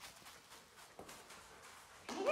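Near silence: faint room tone with a few soft ticks.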